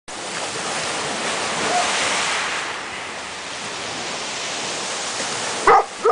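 Sea surf washing in and out under a rock overhang: a steady rush of water that swells louder for a second or two near the start. A short vocal cry comes just before the end.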